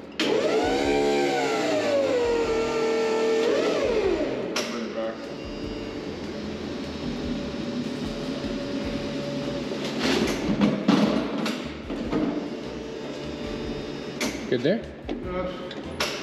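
Forklift lift motor whining as it raises an engine on a chain, its pitch rising and falling as the lever is worked, then holding steady. A few knocks from the hoisted load and chain come in the second half.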